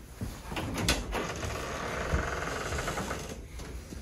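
A patient sliding herself along a padded chiropractic treatment table: a knock about a second in, then a couple of seconds of rubbing as she shifts on the upholstery.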